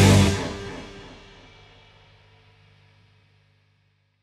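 A live rock band's last chord: electric guitars and drums stop about a third of a second in, and the chord and cymbals ring on and fade away to silence over the next three seconds.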